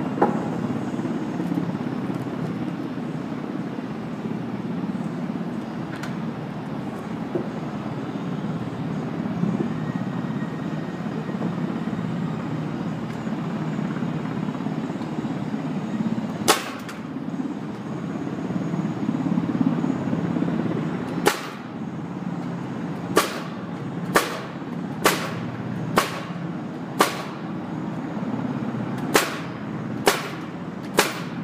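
Pneumatic nail gun driving nails into timber boards: single shots near the start and about halfway, then a run of shots about a second apart in the last third. A steady low rumble runs underneath.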